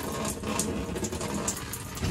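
RV water pump running with a steady low hum while the shower head is switched off at its button, with a few faint ticks.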